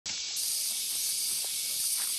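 Steady high-pitched drone of cicadas in tropical forest, an even hiss with no break.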